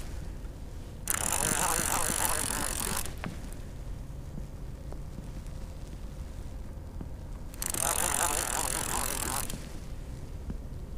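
Conventional fishing reel being cranked by its handle in two spells of about two seconds each, a dense whir of gears, while a small hooked catfish is reeled in.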